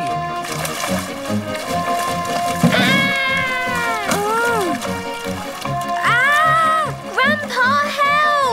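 Cartoon background score with a steady pulsing beat and held notes. Drawn-out wordless cries of alarm rise and fall over it, about three seconds in and again from about six seconds in.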